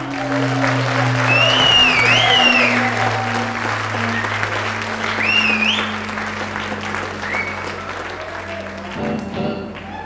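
Concert audience applauding, with several sharp rising-and-falling whistles, over a low sustained note still held by the band's instruments; the applause thins out near the end.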